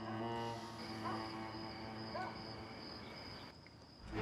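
Soundtrack music with sustained low strings, thinning and fading out near the end.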